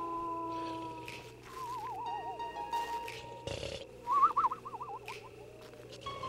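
Eerie film soundtrack: held tones fade out, then a wavering, warbling high sound comes twice, the second time louder, with a short rustling noise burst between them.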